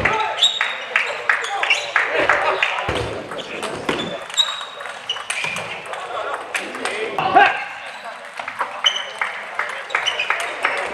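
Table tennis rallies: the ball clicks sharply off the rackets and the table in quick exchanges, with voices in the hall.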